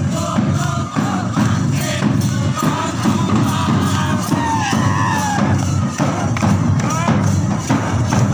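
A walking crowd's voices over a beaten barrel drum and jingling hand percussion, keeping a steady marching beat.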